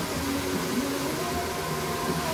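Handheld hair dryer running steadily, blowing air onto hair.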